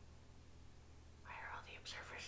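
Near silence for about a second, then faint whispered speech begins about halfway through.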